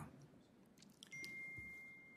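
Near silence in a hearing room, with a faint steady high tone that comes in about halfway through and holds.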